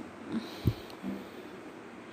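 Quiet steady background hiss with one soft low thump a little under a second in, and a couple of faint brief low hums.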